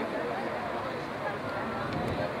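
Chatter of many spectators' voices overlapping into a steady babble, with no single voice standing out.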